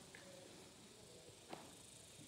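Near silence, with faint distant voices and a single faint click about one and a half seconds in.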